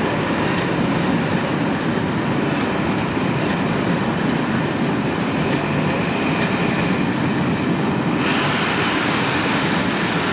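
Passenger train coaches rolling past on the rails: a steady rumble of wheels on track. A brighter hiss joins about eight seconds in.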